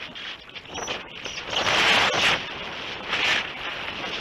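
Air rushing over the onboard camera of a Multiplex Heron model glider in flight, swelling in gusts, loudest about two seconds in and again a little after three seconds. No motor note is heard: the glider is gliding and slowly losing height.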